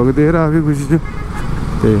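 A man's voice, drawn out for about a second, then a brief pause and an 'uhh' near the end, over steady motorcycle and street-traffic noise.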